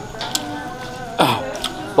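A man clears his throat once, about a second in, a short harsh sound while he eats chili sambal.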